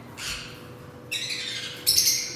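Caged pet parrots squawking: a short call, then harsher, louder squawks from about a second in, loudest near the end.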